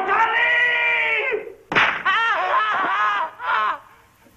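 A man screaming in pain under torture: one long held cry, then a second, wavering cry that starts with a sharp crack about two seconds in, and a short third cry near the end.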